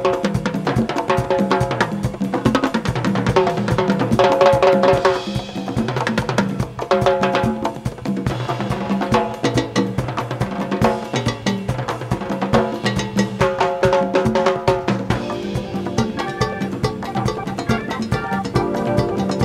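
A rock band with Latin percussion playing live: drum kit, timbales and congas drive the rhythm under bass, keyboards and guitar.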